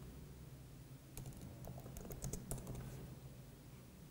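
Faint computer keyboard keystrokes, a short quick run of taps from about one to two and a half seconds in, over a low steady hum.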